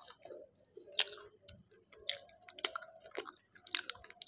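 Close-miked chewing of a samosa, with wet mouth clicks and smacks coming irregularly, about five sharp ones, the loudest about a second in.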